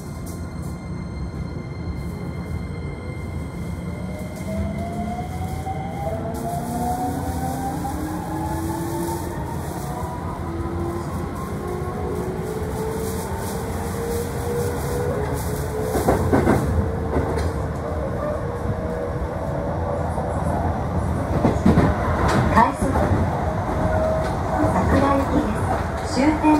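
Electric commuter train heard from inside the car, pulling away: the traction motors' whine glides upward in several parallel tones as the train accelerates, over a steady running rumble. Later come a few sharp clacks of the wheels over rail joints at speed.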